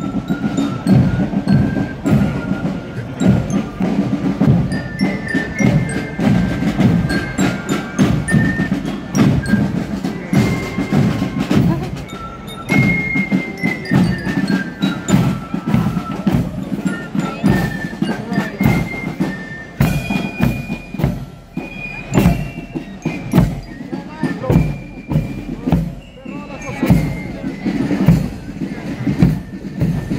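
A marching fife-and-drum band plays a march outdoors: a shrill, high fife melody of short notes over a steady beat of bass and snare drums.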